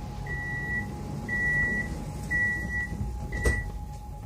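Door-closing warning on an MCC Lastochka electric train: a steady high beep about half a second long, repeated once a second, four times. The last beep is cut short by a single knock as the doors shut, over a faint steady hum from the stationary train.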